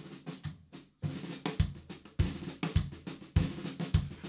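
Drum kit playing the opening beat of a live folk-rock song. Bass drum thumps a little under two a second under snare, hi-hat and cymbal, after a loud first hit and a short lull about a second in.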